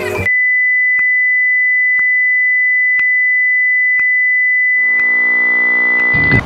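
A steady, high-pitched test-card beep, the single pure tone that goes with TV colour bars, with a faint tick once a second. The café noise cuts off abruptly as the beep starts. About five seconds in, a low buzzing tone joins it.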